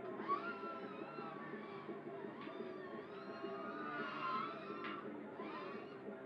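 Music playing, with a whine that rises and falls in pitch as an FPV racing quadcopter's motors are throttled up and down.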